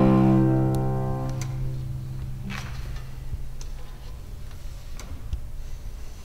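Cello and piano holding a chord at the end of a phrase, which fades away over the first couple of seconds while the cello's low note sustains longest. A pause follows with only a few faint clicks and a soft rustle.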